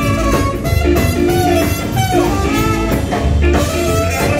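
Live rock band playing loud: electric guitar over bass and drums.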